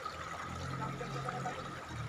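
Shallow, clear river water trickling over rocks: a faint, steady flow.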